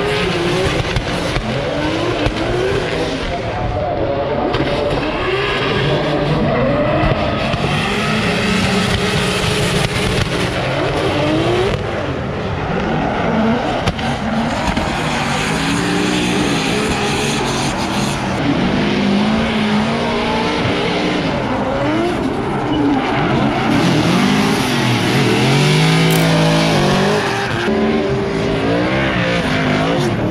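Drift cars sliding through the course: several engines revving up and down over tyre squeal, loud and unbroken.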